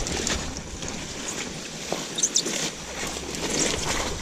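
Broad-leaved swamp plants rustling irregularly as hands push through and part the leaves and stems, with a few faint clicks.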